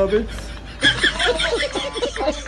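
Men laughing heartily together in quick repeated bursts, starting about a second in after a short lull.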